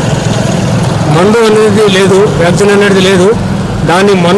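Speech only: a man talking into a handheld microphone, with short pauses, about a second in and again near the end.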